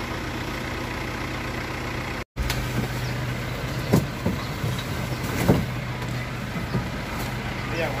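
A truck idling with a steady low hum, with a few sharp knocks about four and five and a half seconds in as frozen mackerel are handled in the refrigerated box. The sound cuts out for a moment just after two seconds.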